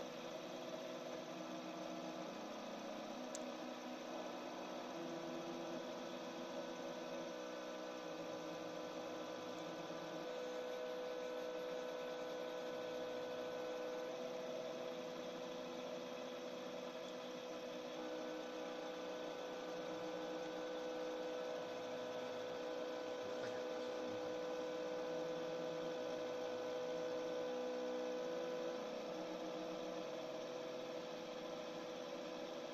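Stepper motors of a hot-wire CNC foam cutter running as the wire cuts through a polystyrene block: a faint steady hum made of several tones, the lower ones shifting to new pitches every few seconds as the motion changes.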